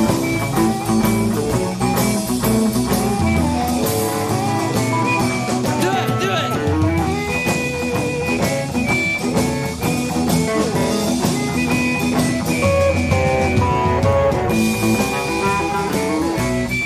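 Live blues band playing an instrumental passage: electric guitar lines over electric bass and drums, with no vocal yet.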